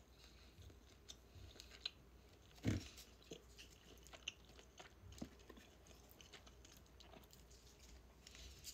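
Faint chewing of a katsudon-style bento (katsuni) close to the microphone, with small scattered clicks and one louder short knock a little under three seconds in.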